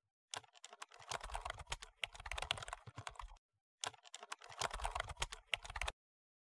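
Computer keyboard typing sound effect: two runs of rapid keystrokes with a short break about halfway, starting and stopping abruptly out of dead silence.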